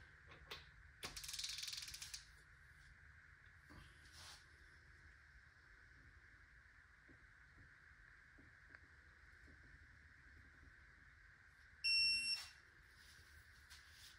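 Electronic torque wrench giving one short beep about twelve seconds in, the alert that the cylinder-head bolt has reached its set 90-degree target angle. Before it come a brief rasp about a second in and a few faint ticks as the wrench is worked, over a faint steady hum.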